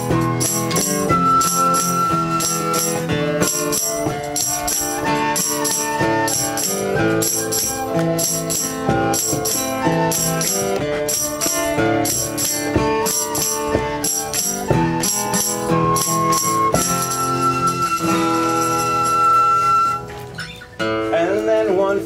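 Instrumental break of a folk song: a tin whistle plays the melody, with long held high notes, over a steady tambourine beat and guitar chords. Near the end the music thins out.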